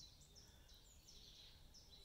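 Near silence with faint distant birdsong: a scatter of short, high notes.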